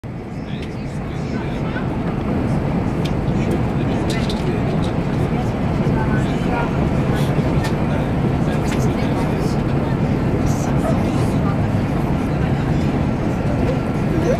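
Steady rumble of a moving vehicle heard from inside it, fading in over the first couple of seconds and then holding even.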